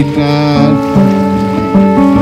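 Acoustic guitar strumming under a fiddle playing long bowed notes that step from one pitch to the next, in an Americana-style song.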